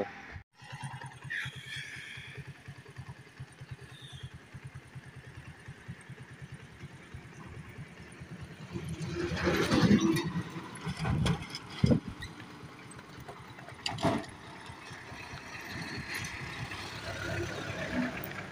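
A small engine running with a steady low putter. A louder vehicle swells past about halfway through, followed by a few sharp knocks.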